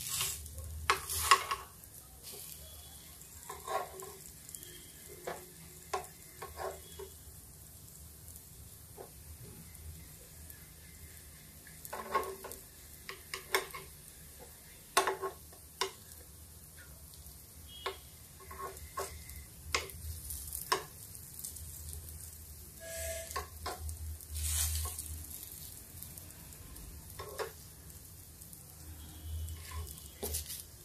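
A metal spoon clicking and scraping against a nonstick appe pan at irregular intervals, some in quick clusters, as wheat-dough baati balls are turned. A faint sizzle comes from the greased pan underneath.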